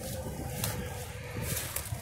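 Low, steady rumble of interstate traffic, with a faint steady hum above it and a few soft ticks.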